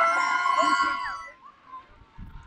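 A high-pitched voice holding a long cheering yell that falls off slightly and fades out about a second and a half in, with other voices faint behind it.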